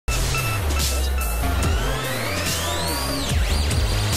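Electronic intro theme music with a heavy bass beat and a synth sweep that rises for about a second and a half, then drops sharply about three seconds in.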